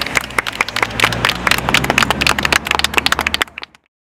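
A small group clapping hands, with some laughter, cutting off suddenly about three and a half seconds in.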